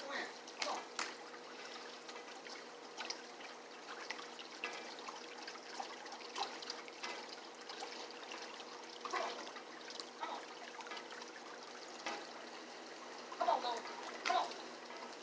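Steady trickle of swimming-pool water, with a few faint clicks and knocks scattered through it. A brief voice comes in near the end.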